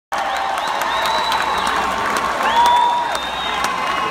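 Concert crowd clapping and cheering, with several long high-pitched screams held over the noise, the longest and loudest about two and a half seconds in.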